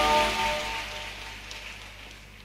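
The last held notes of a live band's song, acoustic guitar among them, ring on and die away within the first second. The music fades out to a faint hiss.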